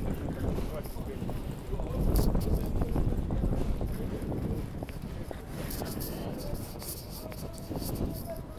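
Wind buffeting a phone's microphone as a low rumble, gusting strongest about two seconds in, over outdoor street ambience.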